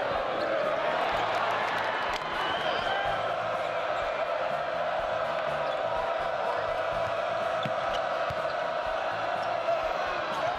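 Arena crowd noise during live basketball play: a steady hum of voices, with a basketball bouncing on the hardwood court.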